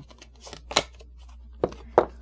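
Oracle cards being handled from a deck held in the hand: three short, sharp card snaps, one a little before halfway and two close together near the end.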